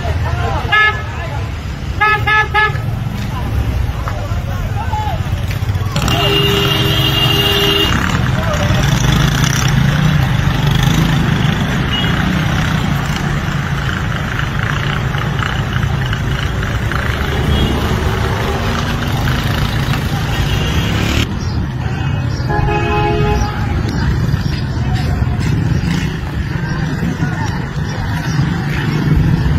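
Street traffic: motorcycle and car engines running in a steady low rumble, with vehicle horns honking, a couple of short beeps near the start, a longer two-second honk about six seconds in, and another short honk near the end.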